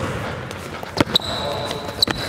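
A basketball dribbled on an indoor gym court, bouncing roughly once a second: at the start, about a second in, and at the end. A high sneaker squeak on the court floor follows the middle bounce.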